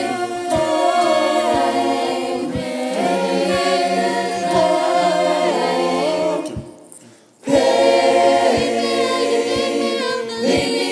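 A mixed teenage choir, recorded at home and layered into one virtual choir, sings in close a cappella harmony over a soft low beat about twice a second. The voices fade out for about a second past the middle, then come back in together.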